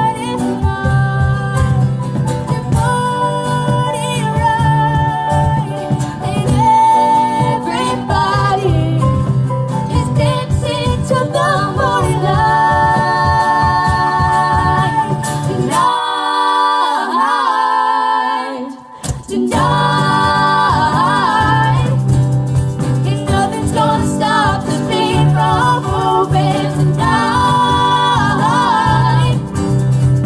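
Live band playing an original pop song on two acoustic guitars, keyboard and cajón, with a lead vocal and harmony voices. About sixteen seconds in, the cajón and low end drop out and the voices carry the song almost alone for about three seconds before the full band comes back in.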